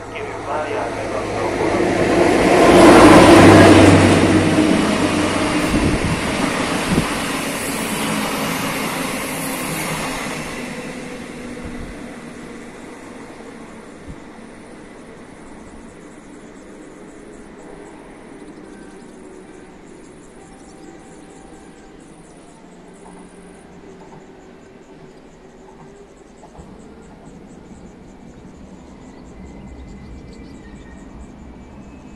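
MÁV class 431 (rebuilt V43) electric locomotive and its passenger coaches running past: the locomotive's hum and the rolling of wheels on rail swell to a loud peak a few seconds in, then the coaches roll by and the sound fades to a low rumble as the train draws away.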